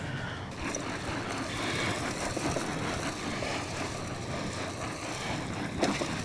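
Walk-behind broadcast spreader being pushed over grass with its hopper open, its wheels rolling and its spinner throwing fertilizer granules: a steady, even noise.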